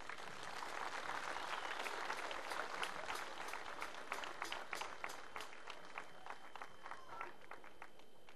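Audience applauding: a dense round of clapping that thins to scattered single claps and dies away near the end.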